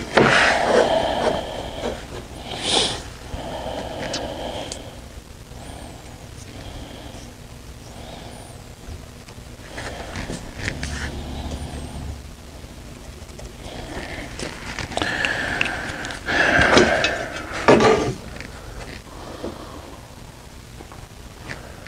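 Handling sounds of a long metal straightedge being slid and set across a board, and a marker drawing a line along it: irregular scrapes and knocks, loudest at the start and again about three-quarters of the way through, where there is a thin scraping tone.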